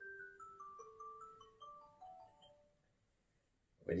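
A phone notification tone: a faint melody of short single notes stepping mostly downward, which stops about two and a half seconds in.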